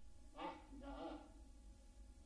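Near silence: faint room tone with a steady low hum and a faint trace of a voice in the first half.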